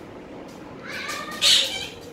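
A short high-pitched cry lasting about a second, which ends in a loud shrill squeal about a second and a half in.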